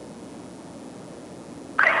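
A low, steady hiss, then near the end a caller's brief "uh" heard over a telephone line, thin and narrow in tone.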